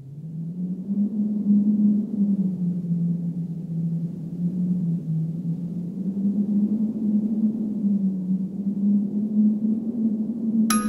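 Low, dark drone of a horror trailer score. It swells up over the first second and then holds, its pitch drifting slightly up and down.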